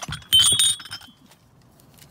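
Thick glass ashtrays clinking against each other as they are handled: a quick cluster of knocks about a third of a second in, with a bright high ring that dies away within about half a second.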